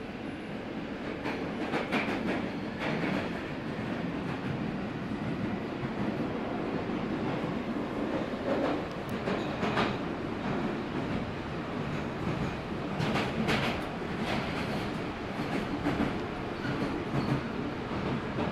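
London Underground Northern Line 1995 Stock tube train running at speed through a deep-level tunnel, heard from inside the carriage: a steady rumble of wheels on rail with irregular clacks and rattles.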